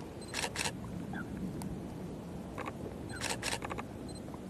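Camera shutter clicks: two quick clicks about half a second in, a fainter single click past two and a half seconds, then two more clicks followed by a few lighter ticks near the end, over a steady low background rumble.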